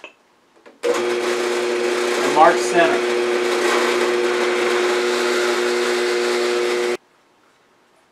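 Drill press running steadily with a half-inch bit boring into a small clamped piece of wood: a steady motor hum under a hiss of cutting. It starts abruptly about a second in and cuts off sharply about a second before the end.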